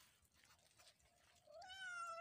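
A cat giving one long meow, faint at first and louder near the end, its pitch wavering.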